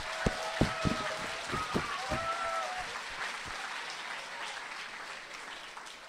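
Audience applause, fading away over the last few seconds.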